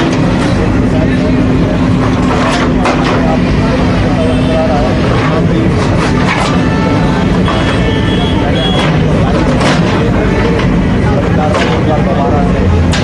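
A backhoe excavator's diesel engine running steadily while its bucket breaks up concrete paving, with repeated sharp cracks and knocks of slab and rubble. Crowd voices can be heard.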